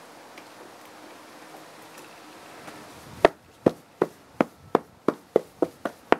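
A work boot stamping repeatedly on a smouldering tinder bundle on asphalt to put it out: sharp strikes, about three a second, starting about three seconds in.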